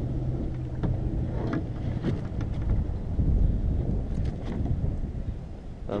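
Wind rumbling on the microphone, with a few short splashes and knocks as a hooked largemouth bass is landed at a kayak.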